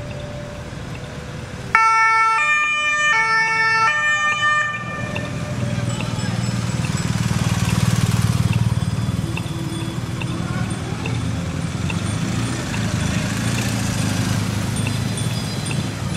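A police two-tone siren sounds for about three seconds, switching back and forth between its two notes, then stops. A steady low rumble of the escorting police motorcycles and patrol car going by follows.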